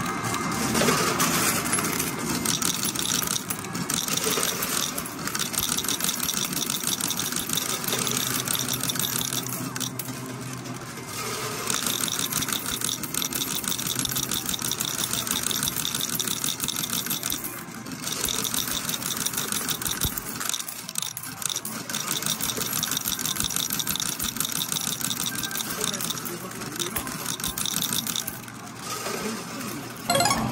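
Arcade medal pusher game running: metal medals clinking and clattering steadily against each other on the sliding pusher shelves, with arcade noise behind.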